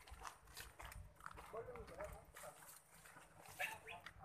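Faint footsteps on a dirt and grass path, with a few faint, short rising-and-falling calls about a second and a half in and again near the end.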